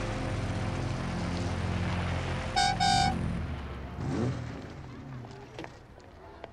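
Car engine running low and steady, with two short car horn toots about two and a half and three seconds in. The engine sound then dies away.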